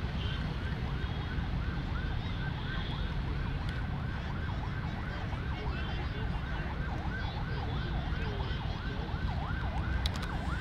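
An emergency-vehicle siren yelping, its pitch rising and falling about three times a second, over a steady low rumble.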